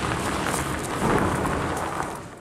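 Wind buffeting a handheld camera's microphone: a steady low rumble under a rustling hiss, with light handling noise.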